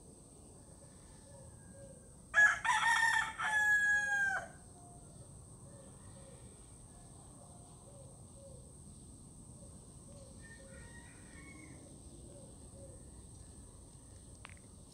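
A bird calls once, loudly, for about two seconds, in several parts that end on a falling note.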